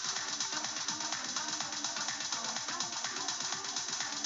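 A 125 BPM future house track playing back, with a delay effect blended in. Fast, evenly repeating low pulses run under a stepped synth melody.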